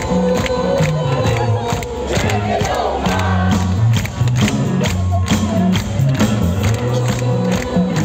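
Rock band playing live through a large PA, with bass notes and a steady drum beat, and a big crowd shouting and cheering over the music, heard from within the audience.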